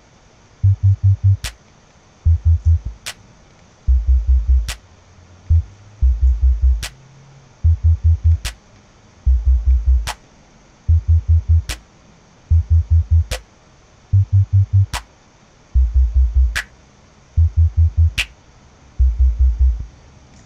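A looped electronic drum-machine beat at 146 BPM playing back: groups of three or four quick deep bass thumps repeating a little over once a second, with a sharp click landing about every 1.6 s, once per bar.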